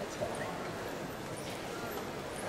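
Steady murmur of voices in a large hall, with a few light knocks from a kendo bout as the fencers probe each other, shinai crossed, on a wooden floor.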